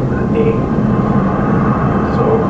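Steady low rumble from the soundtrack of a news film played over room speakers, with a brief faint voice-like sound about half a second in.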